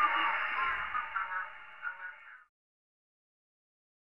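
Narrow-band radio receiver audio: a hiss of static with faint snatches of tones, fading down and cutting off to silence about two and a half seconds in.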